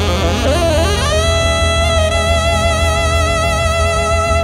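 Live band music: a lead wind instrument plays a short bending phrase, then holds one long wavering note from about a second in, over a steady low beat.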